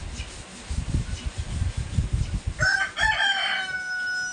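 A rooster crowing, one long call starting about two and a half seconds in, with low bumping noise before it.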